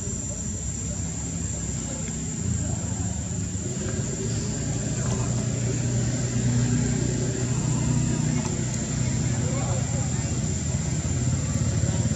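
A motor vehicle engine running steadily, growing louder about two and a half seconds in and again around the middle.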